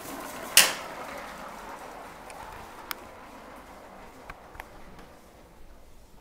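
Mousetrap car with CD wheels running across a wooden floor after release: a sharp snap about half a second in, then a faint rolling rattle that fades as it goes, with a few small clicks.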